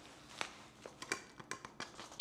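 Faint handling sounds of a padded nylon camera-holster belt being wrapped around the waist and fastened at the front: soft rustling with several small sharp clicks, the clearest a little under half a second in.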